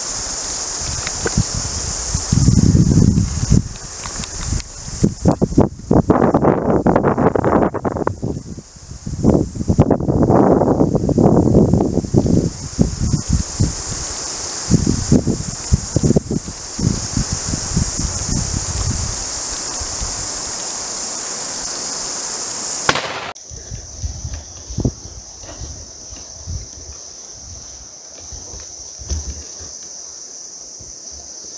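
Steady high-pitched insect chorus with loud, irregular bursts of rustling and bumping from the camera being carried and handled through dry grass, busiest a few seconds in and again around ten seconds. About 23 seconds in the sound changes abruptly to a quieter scene with a thinner, narrower insect trill and a few soft knocks.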